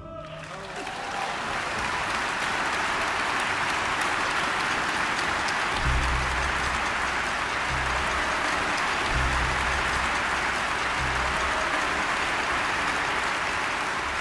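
Concert-hall audience applauding, rising in over the first second or two as the final orchestral chord dies away, then holding steady. A few short low rumbles come through the middle of the applause.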